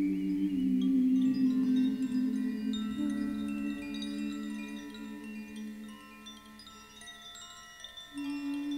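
Improvised meditative music: low sustained drone tones under many high, bell-like ringing notes that come in about a second in and slowly die away toward the end.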